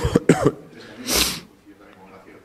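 A man coughing into his fist: a quick run of about three coughs, then a short breathy burst about a second in.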